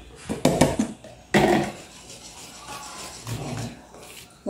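Flour tipped from a plastic tub into a bowl of cake batter, with short knocks of the tub and whisk against the bowl and one louder knock about a second and a half in.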